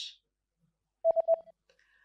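Three quick, short electronic beeps at one steady mid pitch, about a second in, with near silence around them.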